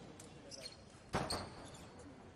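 Fencers' shoes stepping and stamping on the piste during footwork: a few sharp hits, some with a brief ring, the loudest a little over a second in.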